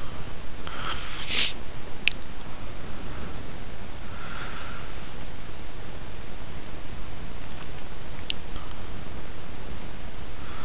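Steady microphone hiss with soft breathing at a desk, broken by a few short, sharp clicks: two close together about a second and a half to two seconds in, and one more about eight seconds in.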